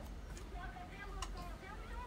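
Faint speech: a voice talking quietly and indistinctly, with a small click about a second in.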